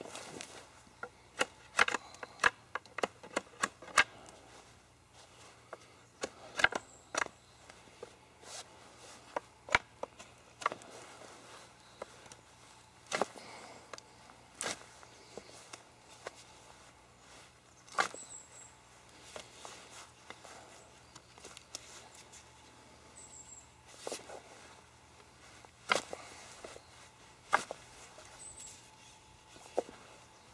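Knife blade cutting and knocking twig stubs off a wooden hiking staff: sharp, irregular clicks and cracks of steel on wood, coming thickly in the first few seconds and then in scattered single cracks.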